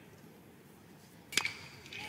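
A metal college baseball bat striking a pitched ball about one and a half seconds in: a single sharp ping with a brief metallic ring, from a hard line drive hit back up the middle.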